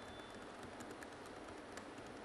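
Faint typing on a computer keyboard: a few scattered keystrokes over low, steady room noise.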